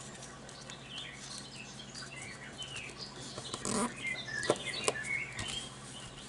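A sheet of origami paper being folded and creased by hand: soft rustling, with a few sharper crackles of the stiff folded paper past the middle.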